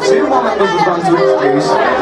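A live indie rock band's amplified guitars in a small club, recorded from among the audience. Early on the held chords drop back and voices and chatter from the crowd come to the front; the chords come back about a second in.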